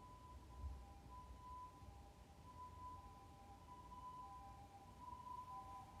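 Near silence: quiet room tone with a faint, thin steady whine.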